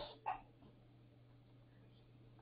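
Near silence: room tone with a faint steady low hum, after the tail of a spoken word and a brief faint sound about a quarter second in.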